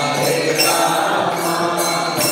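Voices chanting a mantra together in a steady, sung line, with the ringing jingle of metal percussion such as hand cymbals.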